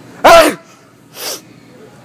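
A person's very loud, deliberately obnoxious staged sneeze, a short voiced burst with a falling pitch about a quarter second in, followed by a quieter breathy sound about a second in.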